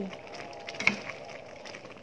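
Metal spoon stirring thick soursop jam in a non-stick pan, with soft scraping and scattered small clicks and a sharper click about a second in.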